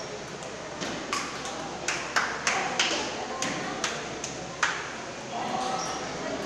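Table tennis rally: the celluloid ball clicks back and forth off paddles and table about a dozen times, two to three hits a second, then stops a little past four and a half seconds in.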